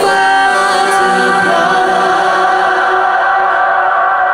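Live electronic song: a female singer's voice layered into held vocal harmonies, a new chord starting at the outset and sustained with no beat.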